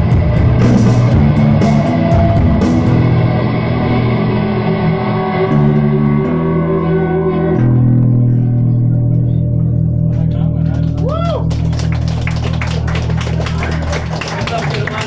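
Live post-punk band with electric guitar, bass and drums. The drums drop out about three seconds in, leaving droning bass and guitar notes. A swooping bent guitar note comes near the end, and light cymbal strokes come back in the last few seconds.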